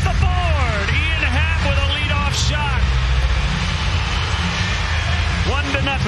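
Voices and music over a steady low background rumble, in a ballpark broadcast just after a home run.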